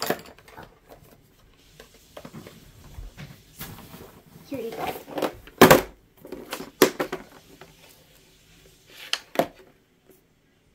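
Wax crayons rattling against each other and a plastic tub as a hand rummages through them for a crayon. A plastic pencil box is handled and opened, giving several sharp clicks and knocks; the loudest comes a little past halfway.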